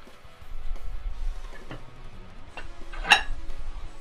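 Background music, with a single sharp metallic clink about three seconds in as the plate-loaded landmine barbell is picked up.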